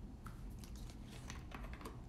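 A faint, quick, irregular run of light clicks, about a dozen in under two seconds, over a low steady hum.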